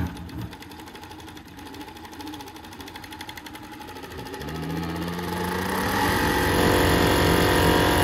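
Kansai FBX-1104PR four-needle chain-stitch waistband sewing machine stitching a waistband strip, its needles making a fast, even ticking. From about halfway through it speeds up and gets louder with a steady hum, running hardest just before it stops near the end.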